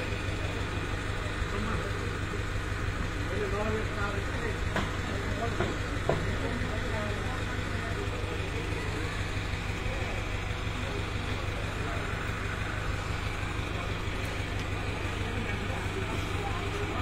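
An engine idling steadily, with faint voices of people talking.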